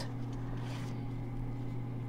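A steady low hum with a few even tones, most likely from an appliance or mains in the room. Faint, brief rustles of stiff paper and card come through as it is handled.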